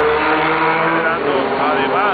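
A man's voice speaking Spanish, with a drawn-out hesitation sound in the first second, over a steady low rumble of vehicle traffic.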